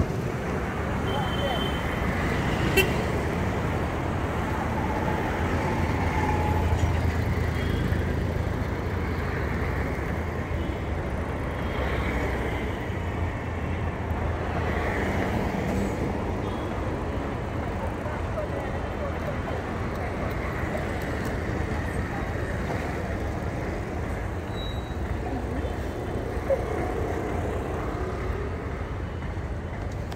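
City street traffic: cars and auto-rickshaws driving past with a steady engine and tyre rumble, one passing vehicle louder a few seconds in, and brief horn toots now and then.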